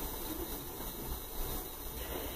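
Quiet room tone: a faint, steady background hiss with a low hum, and no distinct sound events.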